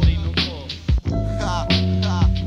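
Hip hop music: a mid-1990s East Coast rap beat with hard drum hits and a deep, sustained bass line.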